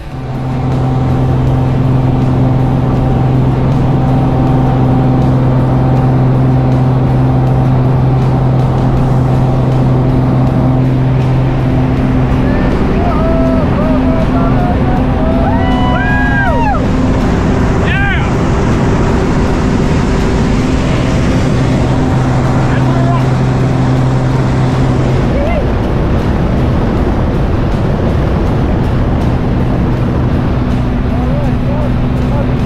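A light aircraft's engine and propeller drone steadily, loud inside the cabin during the climb. A voice calls out briefly around the middle.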